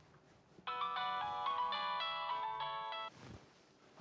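Mobile phone ringtone playing a short electronic melody of quick clean notes for about two and a half seconds, starting under a second in and stopping shortly after three seconds.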